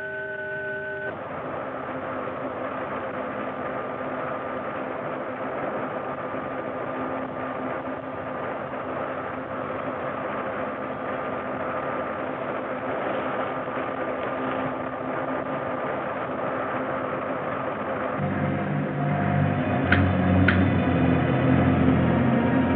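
Film sound effect of a rocket's engines at blast-off: a steady rushing roar with a faint hum running through it. About 18 seconds in, a deeper layered hum joins, and two clicks follow near the end.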